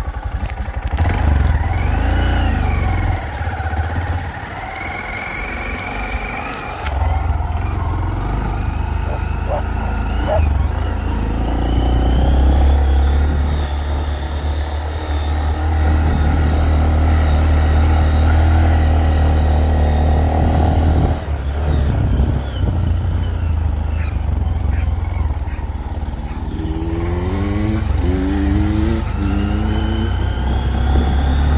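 Honda Monkey mini motorcycle's single-cylinder engine running under way, its note rising and falling with the throttle, easing off twice and then revving up in a few short rising bursts near the end.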